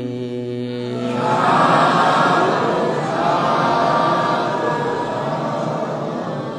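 A Buddhist monk's Pali chanting voice holds its last notes, then from about a second in many voices answer together in a dense group chant that slowly fades.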